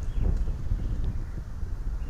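Low, uneven rumble of wind buffeting an outdoor microphone.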